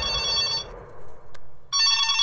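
Mobile phone ringing with an electronic ringtone of steady high tones; it breaks off about two-thirds of a second in and starts again near the end.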